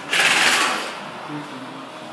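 A sudden loud burst of hissing mechanical noise that fades out over about a second, the kind made by an air tool or compressed air in a garage workshop.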